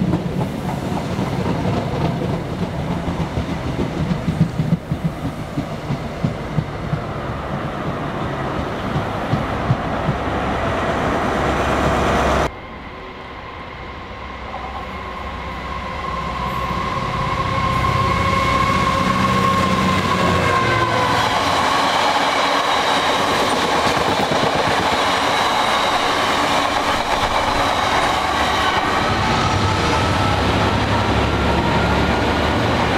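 A passenger train runs past a station platform, its wheels clicking over the rail joints. About twelve seconds in the sound cuts away abruptly. A Freightliner Class 66 diesel locomotive then approaches, its engine and wheel noise building with a rising whine, and passes close by hauling flat wagons.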